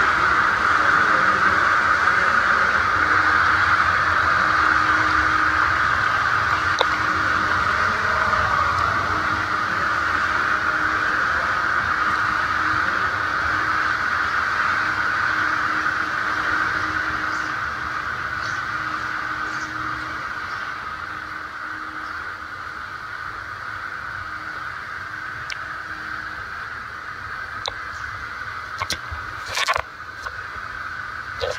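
Steady rushing of foaming water from indoor pool jets. It fades gradually after about the middle as the sound grows more distant. A few sharp clicks come near the end.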